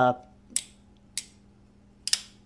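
Tactile Knife Co. Chupacabra folding knife clicking twice, sharply, as its Snex lock is released and the blade is folded shut.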